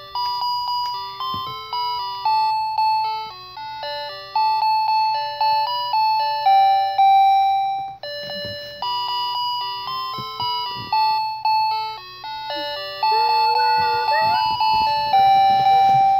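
Graco electric nasal aspirator playing its built-in lullaby tune: a simple electronic melody of beeping notes, breaking off about halfway and starting again.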